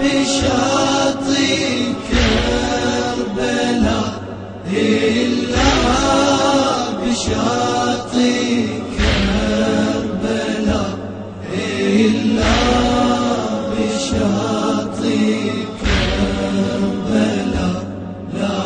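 A Shia latmiya (religious lament) chanted by male voices in long held lines, over a heavy low beat that comes about every two seconds.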